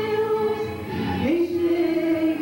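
A woman singing a gospel hymn into a handheld microphone through a PA. She holds one long note, dips briefly about a second in, then slides up into a new, slightly lower held note.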